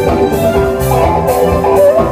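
A live band playing amplified music: electric guitars, bass and drum kit at a steady beat, with sustained melody notes over it.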